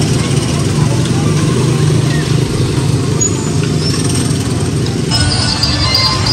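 Small engines of Tomorrowland Speedway ride cars running steadily as the cars drive past, a low drone with music in the background. The sound changes abruptly about five seconds in.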